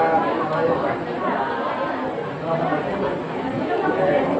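Indistinct chatter of several people talking at once in a room.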